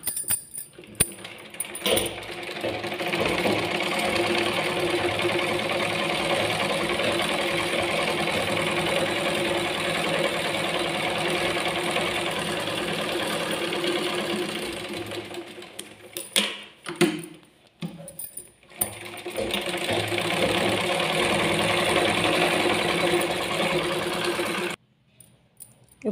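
Black straight-stitch sewing machine stitching through cotton fabric: a steady run of about thirteen seconds, a short stop with a few clicks, then a second run of about five seconds that cuts off suddenly.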